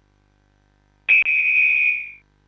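Rugby referee's whistle, one long high-pitched blast starting about a second in, heard close through the referee's microphone: the signal that a try is awarded.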